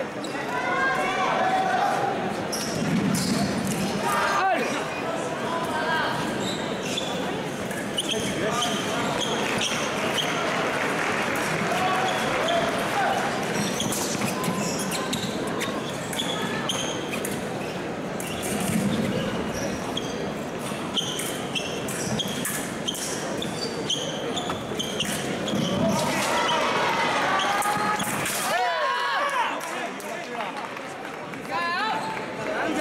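Arena sound during a foil fencing bout: fencers' shoes thudding and squeaking on the piste, with voices and shouts echoing through a large hall.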